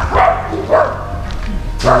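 A dog barking: two short barks about half a second apart in the first second.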